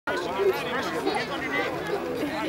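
Several people's voices talking over one another, with a laugh and a shout of "go".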